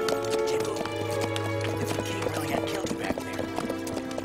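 Horses' hooves clip-clopping irregularly and a horse whinnying, over background music with long held notes.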